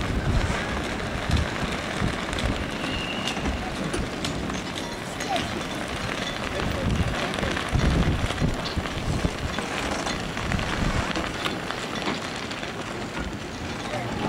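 Outdoor ambience of wind gusting on the microphone, with indistinct voices of people nearby.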